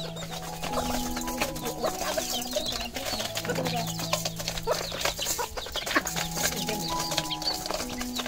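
Chickens clucking while hens and ducks feed from a steel bowl, with many small clicks of beaks on the metal. Background music with long held notes plays underneath.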